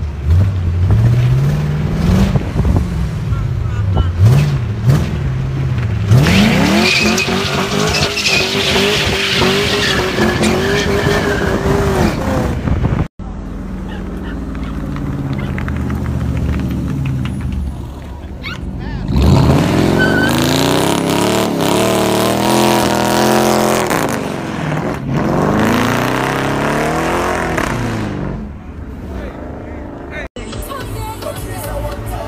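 Car engines revving hard, pitch rising and falling, then held high for several seconds. After an abrupt cut about 13 seconds in, more hard revving with tire squeal as a car does a smoky burnout.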